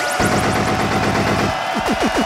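A DJ scratching and cutting a record on turntables. A rapid stuttered burst of about a second is followed near the end by short back-and-forth scratch glides.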